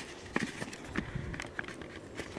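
Handling noise from a handheld camera being turned and moved: a low rumble with a few faint clicks and knocks, most of them in the first second.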